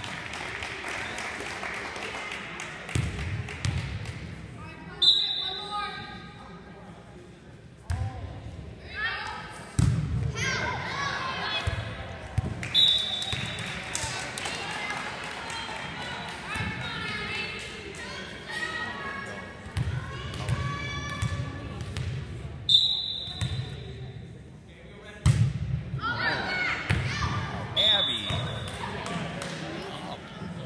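Volleyball play in a gym: the ball is struck and thuds on the hardwood floor several times, a referee's whistle blows in short blasts four times, and spectators' voices chatter and cheer in between.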